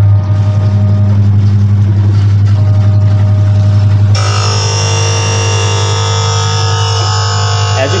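LE 420 automatic lens edger running after its start button is pressed: the grinding-wheel motor gives a loud steady low hum, and about four seconds in the plastic lens blank meets the wheel and a high, many-toned grinding whine sets in suddenly and carries on.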